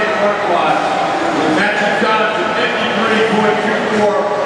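Mostly speech: a man announcing the medal winners over a public-address system.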